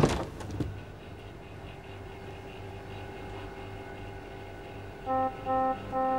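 A refrigerator door pulled open: a sharp pop at the start and a small click just after, then a low steady hum. About five seconds in, music starts with short, stepped notes.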